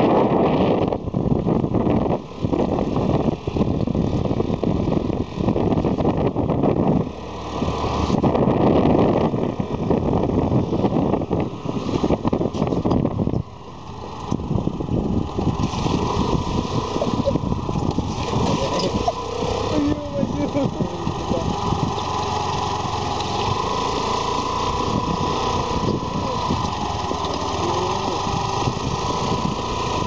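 A two-wheeler's small engine running while riding along a rough dirt track, with heavy wind buffeting the microphone. About 13 seconds in the noise dips briefly, then continues steadier and a little quieter.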